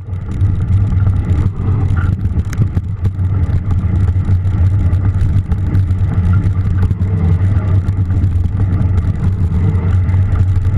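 Steady loud rumble of a mountain bike being ridden on wet, muddy trail, heard from a camera mounted on the bike or rider: tyre and trail noise mixed with wind on the microphone, with scattered small clicks and clatters.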